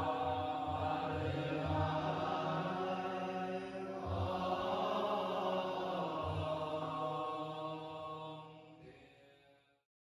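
Buddhist group chanting to a traditional Chinese temple melody, holding long sustained notes over a few low beats, fading out near the end.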